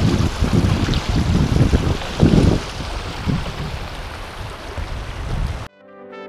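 Shallow river water rushing over and around stone stepping stones, with wind buffeting the microphone in irregular low gusts. The sound cuts off suddenly near the end.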